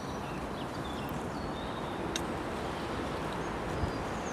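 Steady low outdoor background noise with faint bird calls, and a single sharp click about two seconds in.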